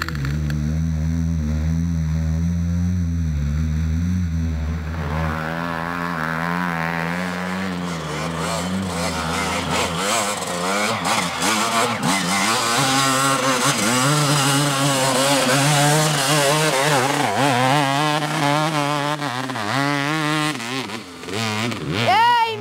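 Dirt bike engine revving, its pitch rising and falling with the throttle; it gets louder about halfway through.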